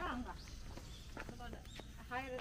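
Faint, indistinct voices in short snatches over a low steady hum.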